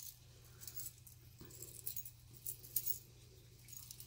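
Small metal charms on a tassel's split ring, a dream-catcher pendant and feather charms, clinking faintly as hands handle them, in a few light scattered clicks over a soft rustle of fabric strands.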